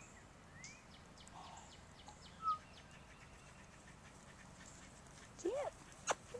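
Faint bird chirps: a few short rising calls and a quick run of high falling notes, with one brief, louder chirp about two and a half seconds in.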